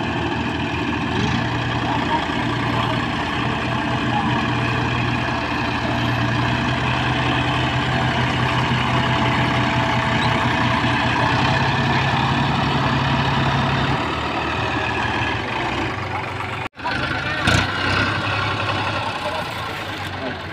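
Diesel tractor engines running hard under load as a Mahindra 365 DI 4WD mini tractor tows a loaded trolley stuck in the field behind a Massey Ferguson 7235 DI. The steady low engine note drops about fourteen seconds in, and the sound breaks off briefly near the end.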